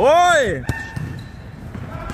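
A man's loud shout of "hoy!", rising and then falling in pitch, followed about two thirds of a second in by a single sharp thud of a punch landing.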